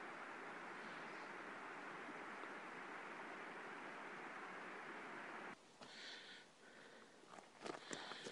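Faint, steady outdoor hiss without any distinct event, cutting off suddenly about five and a half seconds in, after which it is nearly silent apart from a few faint ticks.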